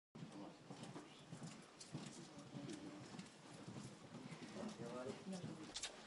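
Faint, indistinct voices in a room with scattered sharp clicks.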